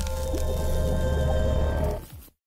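Logo-intro music and sound effects: a sustained deep bass rumble under steady ringing tones, fading away right at the end.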